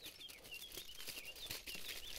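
Faint crinkling of a sheet of non-stick aluminium foil being unfolded by hand, with a bird chirping a quick run of short high notes in the background during the first half.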